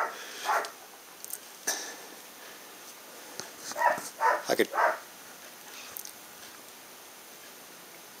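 A dog in the background making a few short, separate noises.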